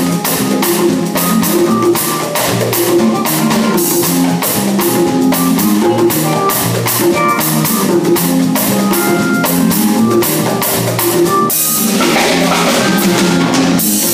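Live band playing with a steady beat: drum kit and conga-type hand drums over held keyboard and bass notes. The drum strokes drop out briefly near the end while the notes carry on.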